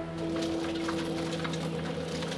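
Irregular crackling and scraping of loose rock and dirt breaking away from an opal-mine wall as it is dug out. Underneath runs a steady low drone that fades near the end.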